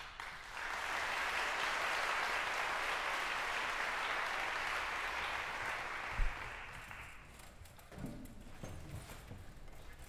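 Audience applauding, swelling in the first second and dying away about seven seconds in, followed by a few scattered soft knocks.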